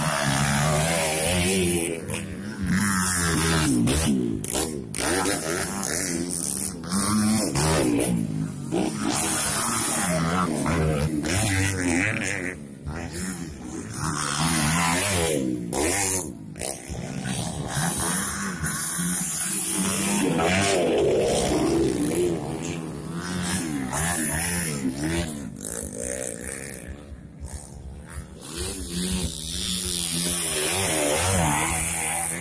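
Dirt bike engines revving up and down as motocross bikes ride through a corner of a dirt track, the engine pitch rising and falling over and over.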